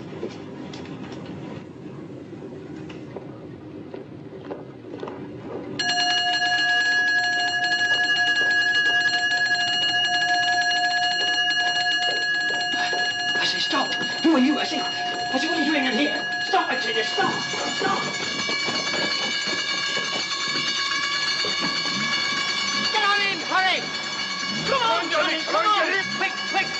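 An electric alarm bell starts ringing suddenly about six seconds in and keeps ringing steadily without a break.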